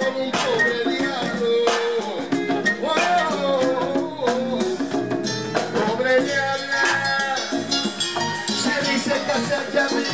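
Live Latin funk band playing: congas struck by hand over drum kit, bass guitar and keyboards, in a steady dance groove.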